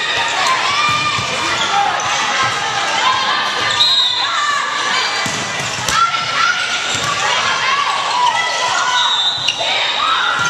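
Echoing gym sound of a volleyball match: players and spectators calling out over each other, shoes squeaking on the court, and a few sharp smacks of the ball being hit, one about six seconds in.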